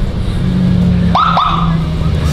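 Vehicle engines running steadily at low revs, with two short whoops a little over a second in that sweep sharply up in pitch and drop, typical of a police siren chirp.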